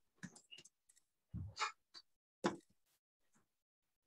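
Faint, scattered short clicks and knocks, about half a dozen, with a low soft thump about a second and a half in and a sharper click just after the middle.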